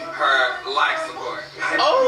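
People talking in a video being played back, with music underneath.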